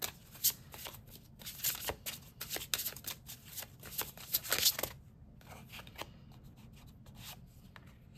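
An oracle card deck being shuffled by hand: a quick run of cards riffling and snapping against each other for about five seconds, then quieter, scattered card handling.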